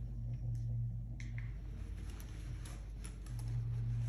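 Scattered small clicks and taps from vital-signs equipment being handled and fitted on the patient, over a steady low hum.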